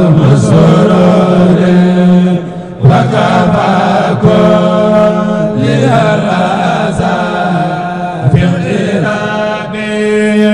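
A man's solo voice chanting an Islamic devotional song in long, held melodic phrases, with a short breath pause a little before three seconds in.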